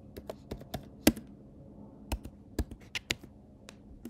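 Typing on a computer keyboard: about a dozen irregular keystrokes as a search is entered, one key struck much harder than the rest about a second in.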